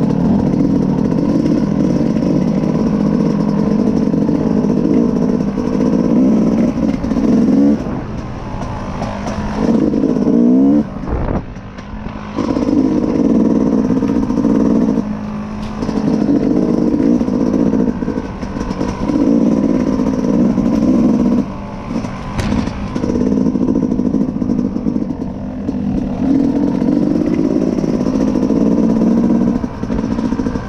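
Dirt bike engine being ridden hard along a trail, pulling under throttle and backing off briefly several times before picking up again.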